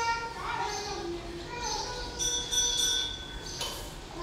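Voices of people talking in the background, including children's voices, with no clear words. Past the middle, a high steady whistle-like tone sounds for about a second and a half.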